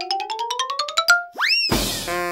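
Cartoon-style sound-effect jingle: about a dozen quick plucked notes climbing in pitch, then a rising 'boing' glide and a loud noisy burst near the end.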